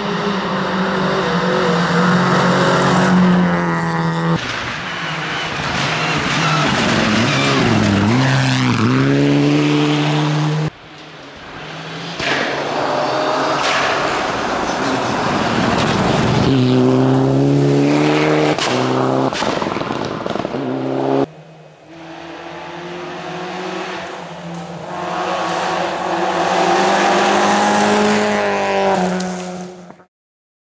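Rally cars passing at speed on a gravel stage, engines revving high and dropping back as they change gear and brake, with tyre and gravel noise. Several separate passes follow one another, each cut off abruptly.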